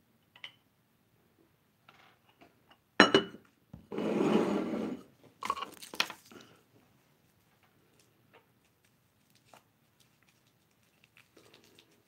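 A sharp knock about three seconds in, like a mug set down on a desk, then crinkling and tearing of a small wrapper being handled and opened, in two bursts with small clicks.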